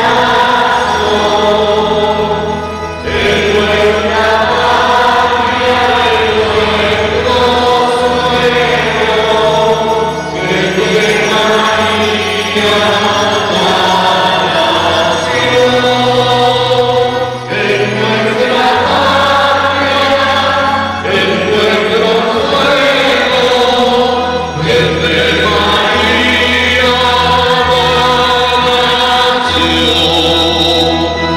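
Slow devotional choral singing in a chant-like style over long-held low bass notes.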